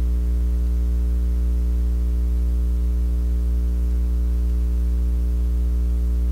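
Steady mains hum: a low electrical buzz with a ladder of evenly spaced overtones, unchanging in pitch and level.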